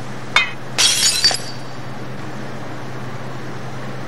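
Laboratory glassware clinking: one sharp chink about a third of a second in, then a brief bright clatter of glass around one second in. A low steady hum runs underneath.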